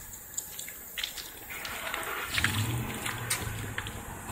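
Water splashing and trickling onto wet asphalt, starting about a second in, with a low steady hum joining about halfway through.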